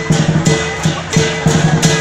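Lion dance percussion band playing a steady beat: a big drum struck with clashing cymbals on each stroke.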